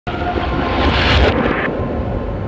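Whoosh sound effect of a television news intro: a sudden rush of noise with a deep rumble that swells to a peak about a second in and then cuts off abruptly, over a few faint held musical tones.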